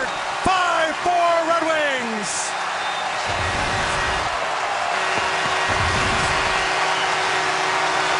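Ice hockey arena crowd cheering a goal, a dense steady roar. Near the start, two long yells fall steeply in pitch over it.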